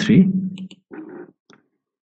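A computer mouse clicking a few times, light single clicks.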